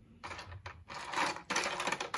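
Hard plastic toy alphabet letters clattering and rattling against each other and the sides of a plastic tub as a hand rummages through them, in quick irregular bursts.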